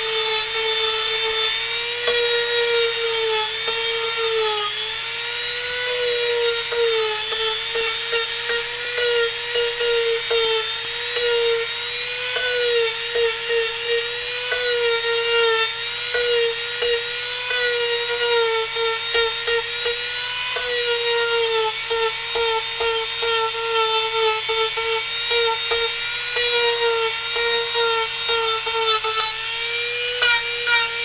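Handheld rotary tool running at high speed with a small abrasive sanding bit held against carved wood, a steady high whine that wavers slightly in pitch as the bit is pressed in and eased off while rounding and smoothing the wood.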